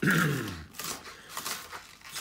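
A man clears his throat once, loudly, then a chef's knife goes on dicing spring onions on a plastic cutting board with light, quick taps.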